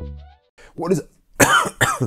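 Electronic intro music ends in the first half-second. Then a man clears his throat three times in short bursts, the last two loudest.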